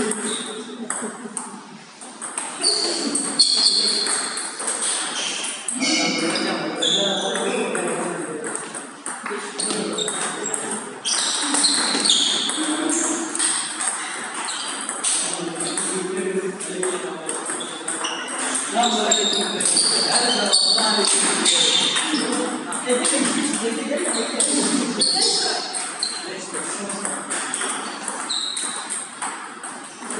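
Table tennis rallies: the ball clicking back and forth off rubber bats and the tabletop in quick runs of hits, broken by short pauses between points, with people talking in the background.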